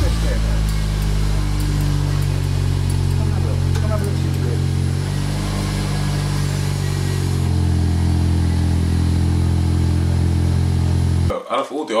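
2019 VW Golf R's turbocharged 2.0-litre TSI four-cylinder, heard through its standard quad-tip exhaust, holding a steady fast idle just after a cold start, its pitch shifting slightly a few times. It cuts off abruptly near the end.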